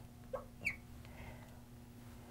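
Fluorescent marker squeaking on a glass lightboard as words are written: two short chirps in the first second, the second rising in pitch, over a faint steady hum.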